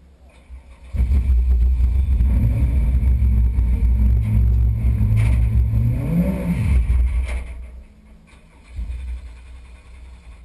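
Racing car engine running close by at a steady idle. It comes in abruptly about a second in, revs up once briefly about six seconds in, and drops away about a second later.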